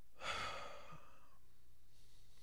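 A person's sigh: one breathy exhale that is loudest just after it starts and trails off over about a second, with a faint steady low hum underneath.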